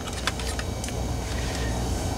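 A few small plastic-and-metal clicks as a 2.5-inch laptop hard drive is worked loose and slid out of its drive bay, most of them in the first half second, over a steady low hum.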